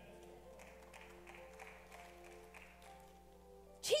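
Soft keyboard chords played quietly, held notes changing slowly under a pause in the preaching.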